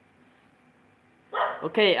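Near silence with faint room tone, then, about a second and a half in, a man's voice begins, saying "okay" as he resumes talking.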